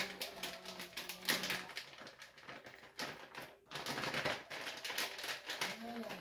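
Plastic wrapper of a package of raw ground turkey crinkling in quick, irregular crackles as it is squeezed and worked by hand, with soft squelches of meat dropping into a crock pot. A faint low hum runs under the first second or two.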